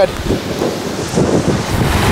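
Gusty wind buffeting the microphone, with small waves washing onto a sandy beach underneath.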